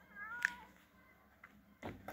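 A cat gives one short meow about half a second in, rising then falling in pitch. A brief rustling crackle follows near the end.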